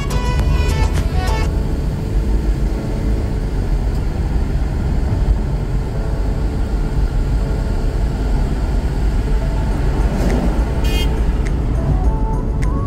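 A moving car's steady, low road and engine rumble. Background music plays for the first second or so, then drops away, with faint traces of it coming back briefly later.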